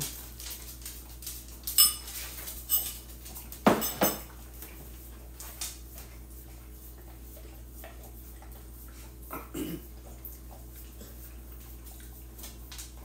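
A metal spoon clinking against a ceramic bowl and the bowl set down on a countertop: a handful of sharp clinks and knocks, the loudest about four seconds in, with a fainter one near the end.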